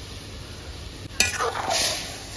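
Metal spoon stirring hog plums in simmering coconut milk in a metal kadai, over a faint steady sizzle. About a second in the spoon clinks sharply against the pan, then scrapes through the liquid.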